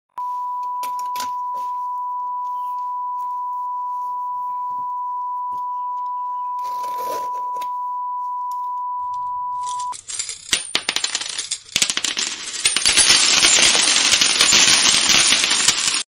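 A steady high beep tone holds for about the first ten seconds over faint clicks. After it cuts off, there is dense crackling and rustling as a taped paper parcel is slit with a blade and torn open.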